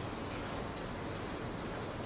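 Steady low hiss with a faint low hum: background room tone.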